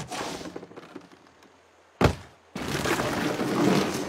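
Film sound effects of dry corn cobs being handled: a thump with a clatter that dies away over about a second, a second thump about two seconds in, then a couple of seconds of corn tumbling and rustling into a heap.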